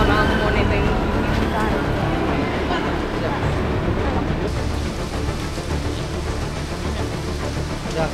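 Outdoor ambient location sound: indistinct voices of people talking over steady traffic noise, with a wavering high tone in the first couple of seconds.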